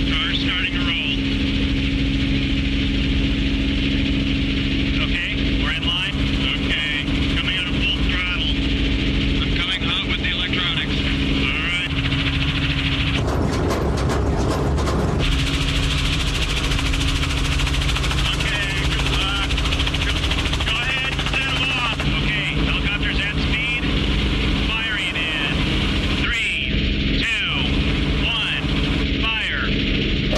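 A steady engine hum with muffled voices over it, and a short burst of rushing noise about thirteen seconds in that lasts about two seconds.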